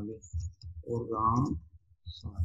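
Light clicks of keystrokes on a computer keyboard as a short phrase is typed, under a voice speaking.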